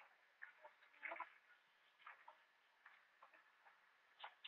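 Near silence with a few faint, short ticks and chirps scattered through it, the clearest about a second in.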